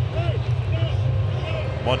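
A steady low rumble of ballpark ambience, with a few faint, brief voices over it.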